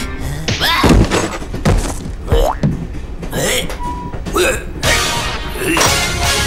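Cartoon soundtrack: a small character's wordless vocal sounds sliding up and down in pitch, with a few dull thunks about one, two and two and a half seconds in, over music.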